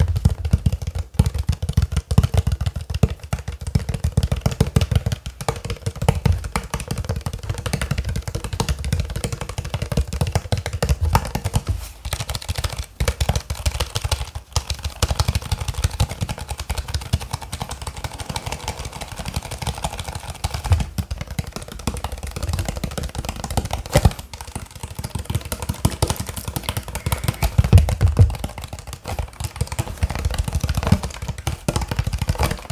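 Clear plastic water bottle squeezed and twisted in the hands right up close, giving a continuous dense crackling of the ridged plastic with low handling thumps mixed in.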